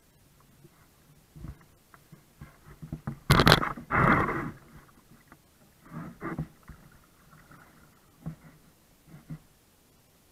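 A kayak being paddled through a shallow, narrow stretch of creek: irregular splashes and scrapes of paddle and hull, the loudest a little after three seconds in.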